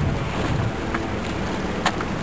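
Wind rumbling on the microphone over the wash of sea waves, with a sharp click near the end.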